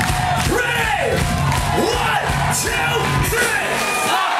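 Loud live punk-rock band: drums on a steady beat, distorted electric guitars and yelled vocals with sliding pitch.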